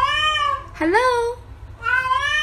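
An orange cat meowing twice, each call drawn out for under a second and bending up then down in pitch. The meows sound like the word "hello".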